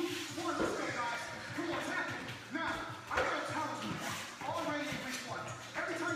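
Background workout music with a voice over it, and a couple of thuds of hands landing on a rubber gym floor about half a second and three seconds in.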